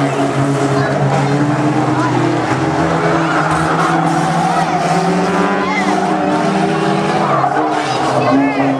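Several banger racing cars' engines running hard together, with tyres skidding as they bunch through the bends.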